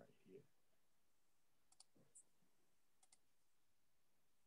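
Near silence with a few faint computer clicks, two of them quick double clicks about a second and a half apart.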